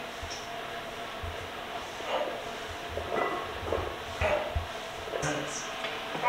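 Gym equipment and weight plates knocking and rattling during exercise reps: a few soft low knocks spread over several seconds.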